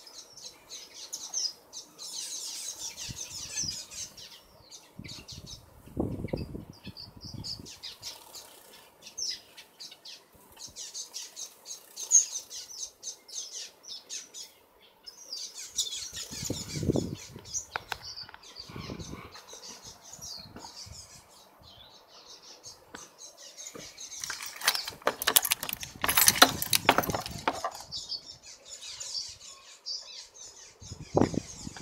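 Aviary finches calling with many short, high chirps throughout. A few low rumbles come and go, and a louder stretch of rustling noise comes a few seconds before the end.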